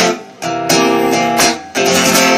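Acoustic guitar strummed, several chord strokes with two brief drops in loudness between them.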